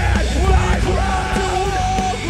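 Metal/hardcore band playing live at full volume: distorted electric guitars, bass and drums, with a yelled vocal over them. A high guitar or vocal note is held through the second half.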